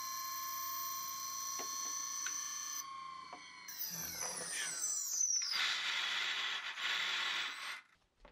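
9225 160kV brushless motor spinning a 3D-printed gyro disc weighted with loose ball bearings, running slightly off centre: a steady high whine that falls in pitch from about four seconds in as the disc slows, then a couple of seconds of rough noise that stops suddenly near the end.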